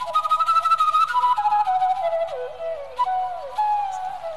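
Bansuri, the side-blown bamboo flute, playing a quick, ornamented phrase. The phrase winds downward in pitch over the first two and a half seconds, then rises and settles on a held note near the end.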